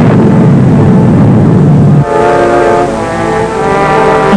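Dense low rumble of the atomic blast on an old film soundtrack, which stops abruptly about halfway through and gives way to a loud held orchestral chord of several steady tones.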